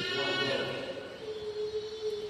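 A man's voice over a church microphone, drawn out into long held notes as in chanting, with one steady note sustained through the second half.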